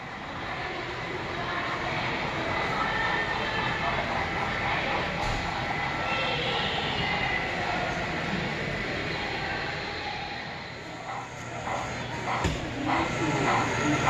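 HO scale model freight train, hauled by two steam locomotives, running along a layout over the steady background noise of a busy exhibition hall. Voices grow louder in the last few seconds.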